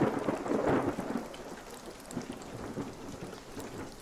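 Rain ambience with a roll of thunder that swells in at the start and slowly fades away over the next few seconds.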